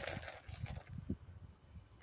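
Irregular low thumps and rumble on a handheld phone microphone, with a short noisy burst at the start.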